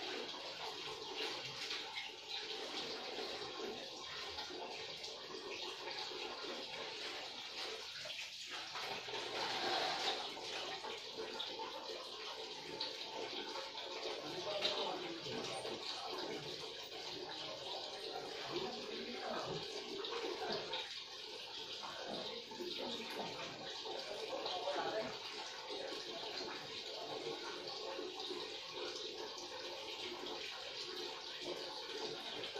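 Water running and splashing in a tiled shower stall as it is being cleaned, a steady rushing with small irregular changes.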